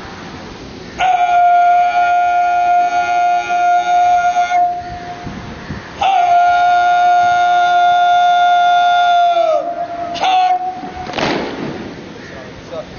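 Parade commander's shouted drill command, drawn out into two long held calls of about three and a half seconds each; the second falls in pitch at its end. A short sharp executive word follows, then a brief crash of noise from the ranks.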